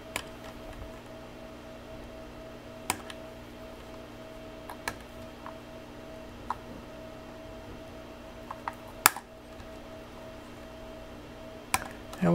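Scattered sharp clicks of pliers and wire cutters working wires off a metal terminal strip, about half a dozen in all, the loudest about nine seconds in, over a steady background hum.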